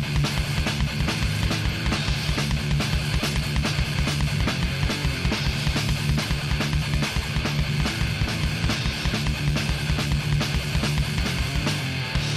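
Death metal band playing live: heavily distorted guitars and bass over a fast, even kick-drum beat. The drumming stops just at the end, leaving a held guitar chord ringing.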